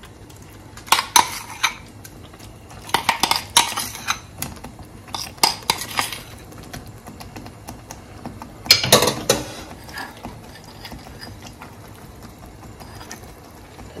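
Metal spoon clinking and scraping against a bowl and frying pan while spooning ground egusi paste into a stew, in four short clusters of taps, the loudest about nine seconds in.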